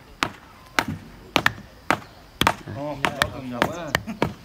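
Long wooden hand rammers pounding loose earth inside the formwork of a rammed-earth wall: sharp, irregular thuds, two or three a second, from several men tamping at once. Voices talk over the later thuds.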